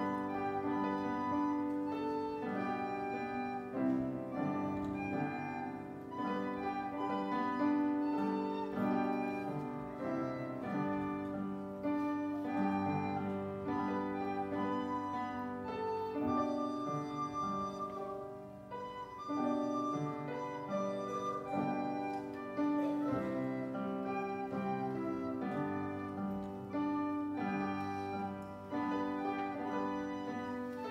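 A child playing a melody on a plastic recorder, accompanied on an upright piano.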